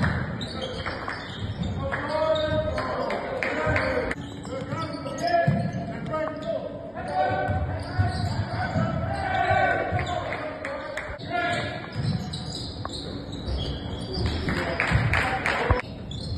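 A basketball being dribbled on a hardwood gym floor during play, repeated bounces with voices calling out on and off the court. The sound echoes in a large gymnasium.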